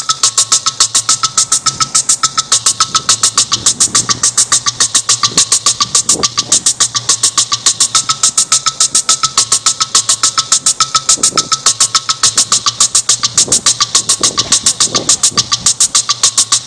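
Industrial electronic music played through a PA speaker: a fast, machine-like pulse of noisy hits, about eight a second, over a steady low drone, with a high buzzing tone that switches back and forth between two pitches.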